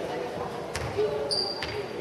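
Handball bouncing on a sports-hall floor: two thuds about a second apart, over the chatter of voices in the hall. A brief high steady tone sounds in the last half-second.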